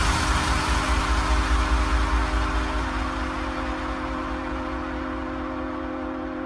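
Electronic dance music with the drums dropped out: sustained synth chords over a fading wash of noise. The chord shifts about three seconds in, and the whole sound slowly dies down.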